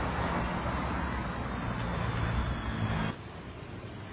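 Street traffic noise: a motor vehicle running close by with a low rumble, cutting off abruptly about three seconds in to a quieter background.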